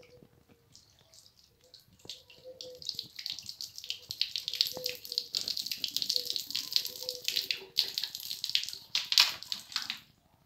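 Water being poured onto a hard floor and splashing around a dried root. It starts about two seconds in and runs loud and uneven, with a brief break just before the end.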